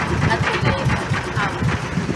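Indistinct people's voices over a steady, dense outdoor noise with a low rumble beneath.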